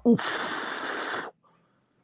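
A man's 'oof', a reaction to a near-miss punch, drawn out into about a second of breathy hiss that stops abruptly.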